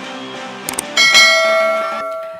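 Two quick click sound effects, then about a second in a bright bell chime rings out and slowly fades, over the tail of upbeat intro music.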